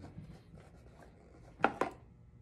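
Faint handling of a cardboard box being lifted: light rubbing and scraping, then two short sharp knocks about a second and a half in.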